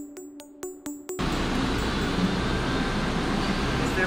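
A brief electronic logo jingle of quick, evenly spaced plucked notes. About a second in it cuts off suddenly, and steady workshop noise with a low hum takes over.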